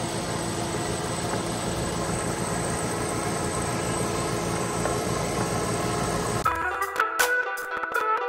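Vevor refrigerant recovery machine running steadily and loud, its AC-motor-driven compressor pulling liquid R-410A refrigerant out of an air-conditioning system. About six and a half seconds in it cuts off abruptly and music takes over.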